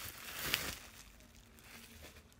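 Faint rustle and crinkle of paper wrapping being pulled off a small dish, with a light click about half a second in, then fading almost to silence.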